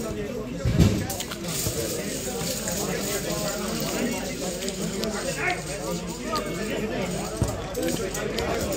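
Players' voices calling out on the pitch during a small-sided football game, over steady background noise, with a sharp thud about a second in and a smaller one near the end.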